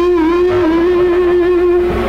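Live band music from a concert recording: one long held note, wavering slightly in pitch, sustained over guitar.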